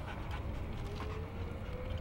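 A dog whining while begging for food: one long, thin whine that starts about a second in and rises slowly in pitch.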